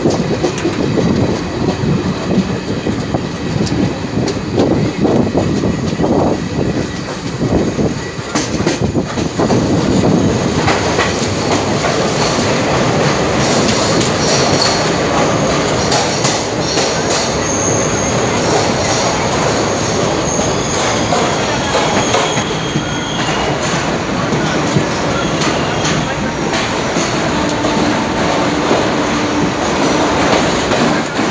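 Passenger train running along the track, heard from aboard: steady wheel and coach rumble with clacks over rail joints. Thin high-pitched wheel squeals come and go through the second half.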